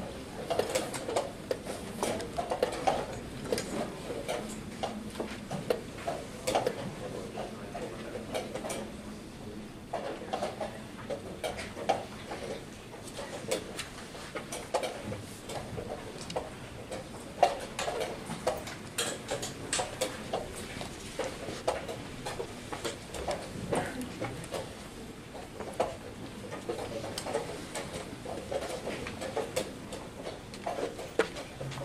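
Wooden chess pieces being set down on boards and chess clocks being pressed in a tournament hall: a steady scatter of irregular sharp clicks and knocks from many boards at once.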